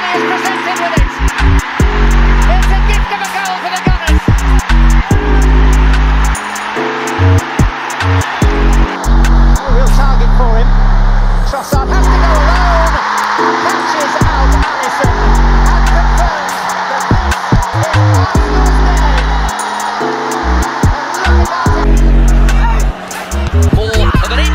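Background music with a heavy bass line changing note every half-second or so, over a dense wash of stadium crowd noise that swells in the middle.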